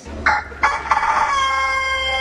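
A game-show sound effect marking a 'palomazo' verdict. A couple of short noisy bursts give way, just over a second in, to one long call held at a steady pitch.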